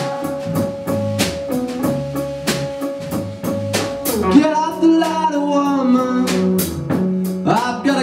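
Live rock band: a male singer holding long sung notes over electric guitar and a drum kit with regular cymbal and snare hits.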